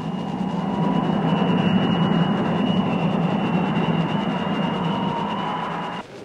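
Steady roar of jet aircraft in flight, with a faint high whine over it; it cuts off abruptly at the end.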